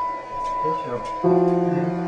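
Piano music: a held high note fades, then a low chord is struck just over a second in and rings on.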